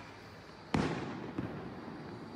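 A gunshot from a rubber-bullet launcher cracks once about three-quarters of a second in and rings out in a long echo. A fainter pop follows about half a second later.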